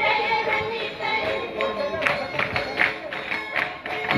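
Live folk dance music played by a festival dance troupe: held melody tones over frequent sharp percussive strikes.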